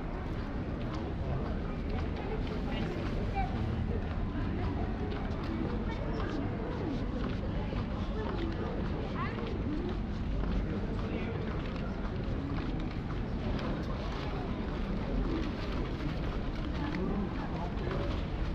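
Ambience of a busy pedestrian shopping street: indistinct chatter of passers-by and footsteps on paving over a steady low rumble.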